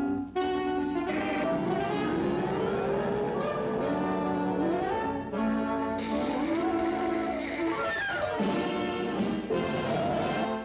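Orchestral cartoon score led by brass, playing through with several sliding phrases that rise and fall.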